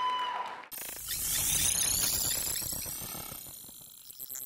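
Electronic logo sting for an outro: a steady held tone breaks off under a second in, then a sudden hit sets off rising sweeps that slowly fade away.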